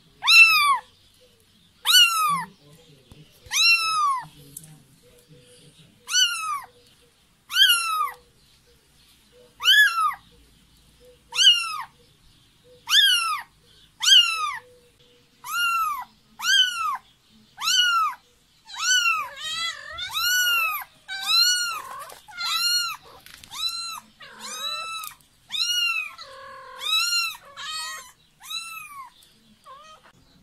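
A very young kitten meowing over and over, calling for its mother: thin, high-pitched cries, each rising and then falling in pitch. About every second and a half at first, the calls come faster and run into one another in the second half.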